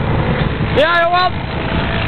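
A person's short shout that rises and then falls in pitch, about a second in, over a steady noisy rumble.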